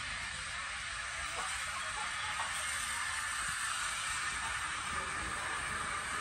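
SECR O1 class steam locomotive running slowly in along a station platform: a low rumble under a steady hiss, growing a little louder about two seconds in.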